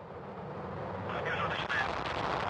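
Soyuz booster's first-stage rocket engines firing in the main engine start sequence, a rushing noise that grows steadily louder as the turbopumps spool up toward flight speed.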